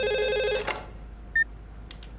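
Phone ringtone holding one electronic note, cut off about half a second in as the call is answered, followed by a short beep and a click.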